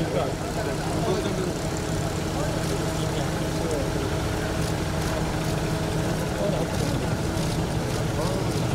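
A steady low droning hum with an even, unchanging pitch, under the murmur of people talking.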